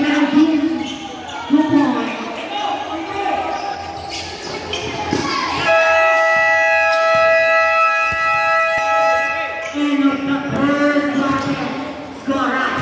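A basketball bouncing on the court amid shouting voices, then, a little past halfway, a game buzzer sounds one long steady tone for about four seconds before the voices return.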